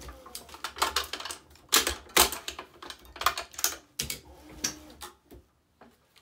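Hands working the string on a tennis racquet stringing machine while the last main strings go in: a run of irregular sharp clicks and knocks, loudest around two seconds in, fading out near the end.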